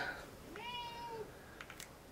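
A cat meowing once, a faint high call a little under a second long, falling slightly in pitch. A few faint clicks follow near the end from the small plastic jar being handled.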